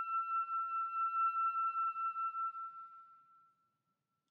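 Soprano saxophone holding one long high note, its loudness wavering slightly, fading away to nothing about three and a half seconds in.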